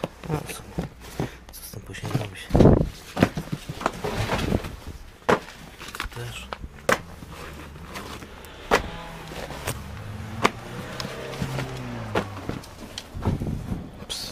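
Paper magazines being handled and shuffled in a cardboard box, with scattered knocks and clicks and one dull thump about two and a half seconds in. Faint murmuring is heard partway through.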